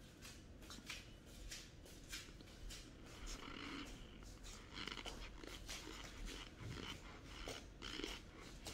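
Faint eating sounds of a mouthful of cornstarch being chewed, scattered short crunching clicks, with a metal spoon scraping in the bowl.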